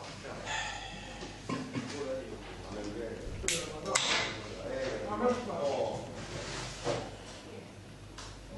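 Indistinct voices murmuring in a room, with a short sharp hiss and a click about three and a half seconds in.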